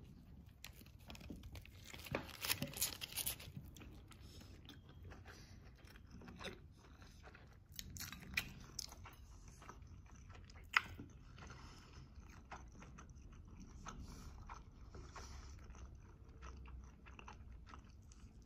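A person biting into and chewing a chicken onigiri, a rice ball wrapped in nori. It is faint throughout, with a run of louder bites and crunches about two to three seconds in and a single sharp click later on.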